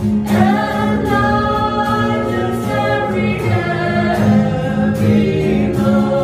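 A small group of men and women singing a worship hymn together, accompanied by an acoustic guitar strummed in a steady rhythm.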